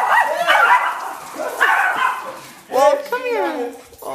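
Small dogs vocalizing as they meet, mixed with people's voices; the loudest sound is a drawn-out call falling in pitch near the end.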